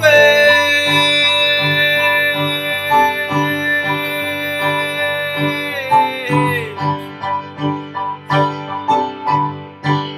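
A man singing one long held note over repeated keyboard chords. The note slides down and stops about six seconds in, and the chords carry on alone.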